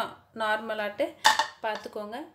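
A woman speaking, with one short clink of dishware a little past the middle.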